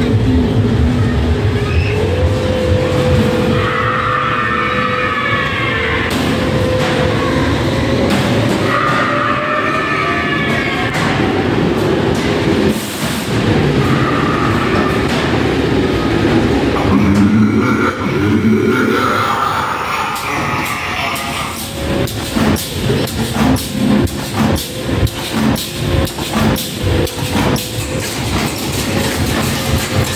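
Horror dark-ride soundtrack playing loud inside a funfair ghost train: a steady held drone with wavering eerie effects, over the low rumble of the ride car on its track. In the second half a run of sharp regular knocks sets in, about two a second.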